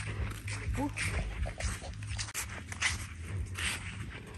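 Footsteps on a sandy dirt road, about two or three a second, with a short rising cry about a second in.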